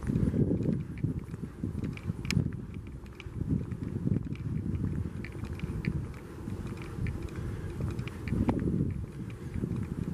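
Footsteps of a person walking while holding the camera, over a constant uneven low rumbling on the microphone.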